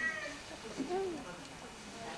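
A toddler whimpering and fussing, with a short rising-and-falling whine about a second in, over a murmur of voices.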